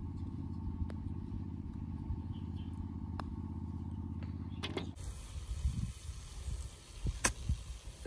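A steady, evenly pulsing engine hum, like an idling motor vehicle, that stops about five seconds in, with a faint click of a putter striking a golf ball in the middle of it.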